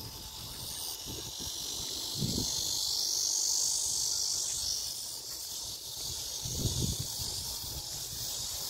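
Steady, high-pitched chorus of insects in grass, swelling in the middle, with wind gusts buffeting the microphone twice.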